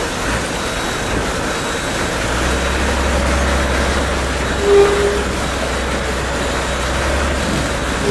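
Buses running on a road: a steady low engine rumble with road noise, and one short horn toot about halfway through.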